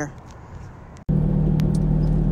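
A second of quiet, then a sudden cut to a car driving, heard from inside the cabin: a steady low engine hum with road rumble.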